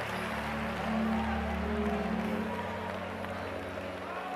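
Sustained keyboard chords held on steady low notes, under congregation applause and crowd noise.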